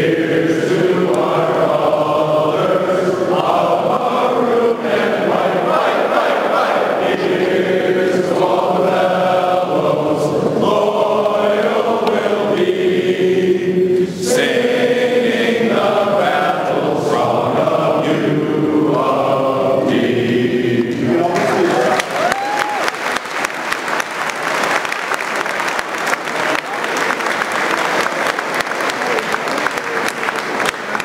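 A group of men singing together in chorus for about twenty seconds. The song ends and the audience breaks into applause, with a brief cheer.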